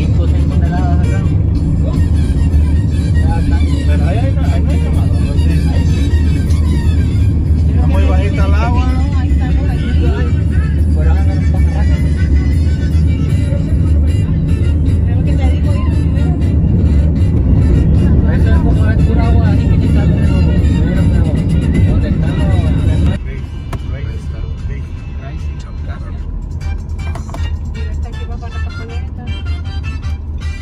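Steady low rumble of road and engine noise inside a moving car, with music and a singing voice over it. About two-thirds of the way through, the sound drops suddenly to a quieter level of road noise.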